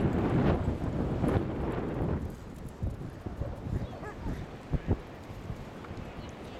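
Wind buffeting the microphone, loud for the first two seconds and then easing, with a few dull thumps near the middle and toward the end.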